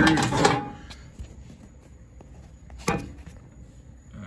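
Quiet room tone with a faint low hum, broken by one sharp knock about three seconds in.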